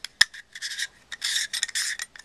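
Threaded adapter ring being twisted on a plastic ReadyCap lens-cap holder: a sharp click, then three rasping scrapes as the threads turn against each other.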